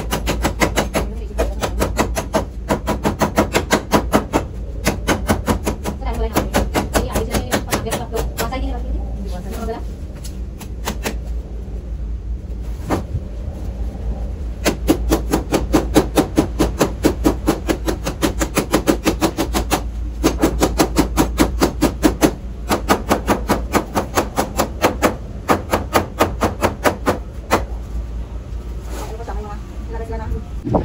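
A cleaver chopping again and again into a rattan chair frame, in fast runs of about four strikes a second with short pauses between them, to break the furniture apart.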